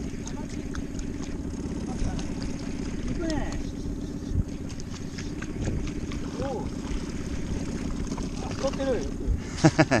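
Boat motor running steadily with a low hum, with faint voices over it and laughter near the end.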